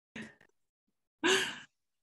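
A person sighing over a video call: a short, soft breath, then a louder breathy sigh about a second in, with the line cut to dead silence around them.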